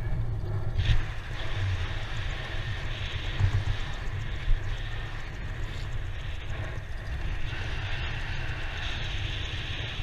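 Wind rushing over a body-mounted camera's microphone during a parachute descent under an open canopy: a steady rushing hiss over an uneven low buffeting rumble.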